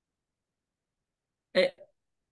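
Dead silence for about a second and a half, then a single short, clipped vocal 'um' near the end.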